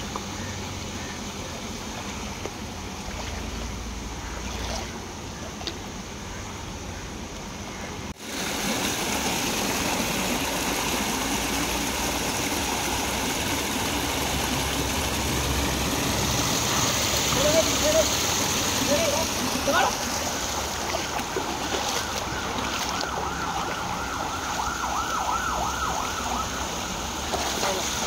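Shallow stream water rushing and splashing against a rocky bank, with faint voices. The water gets abruptly louder about eight seconds in.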